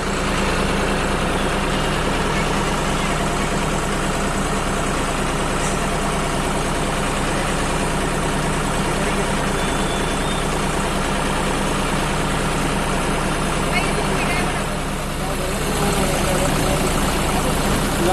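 Diesel tractor engine idling steadily, with low-pitched hum. Voices can be heard in the background near the end.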